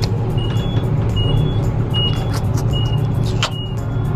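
Elevator cab in motion: a steady low hum with short, high electronic beeps repeating about every two-thirds of a second, and a sharp click about three and a half seconds in.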